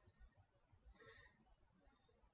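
Faint breath blown out once, about a second in, by a man exercising on his back through abdominal crunches, over near silence.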